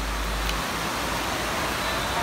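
Steady rushing hiss of water pouring down from an overhead water-play structure into a shallow splash pool. A low rumble underneath stops about half a second in.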